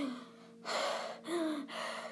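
A person taking deep, audible breaths: three breaths in quick succession, the first starting about half a second in.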